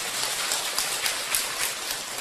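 Audience applauding, many hands clapping.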